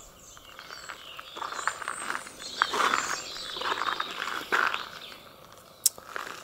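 Garden birds chirping and singing, with a short sharp click near the end.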